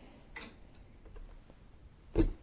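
Quiet room with a few faint, short clicks during a pause in speech.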